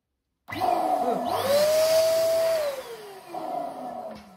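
Electric balloon pump running as it inflates a latex balloon on its nozzle. The motor starts about half a second in, its whine rises and holds, then cuts off after about two seconds and winds down with a falling whine.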